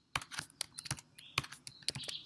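Typing on a computer keyboard: a quick, uneven run of key clicks that starts just after the beginning.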